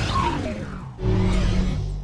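Channel logo intro sting: a sudden musical hit with a falling swoosh, then a second swell of low sustained tones about a second in that fades toward the end.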